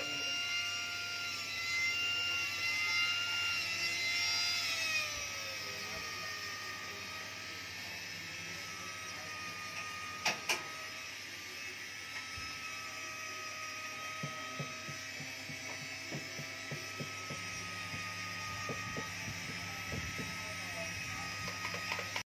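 Jeweller's electric micromotor handpiece (hand machine) running with a steady high-pitched whine while its bur cuts a design into a gold piece; the pitch shifts and drops during the first five seconds, then holds steady. Two sharp clicks come a little past the middle, and light ticks from the tool against the metal follow later.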